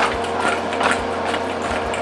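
Fried chicken wings being tossed in sauce in a stainless steel mixing bowl: a string of irregular knocks and slaps as the wings land back against the metal.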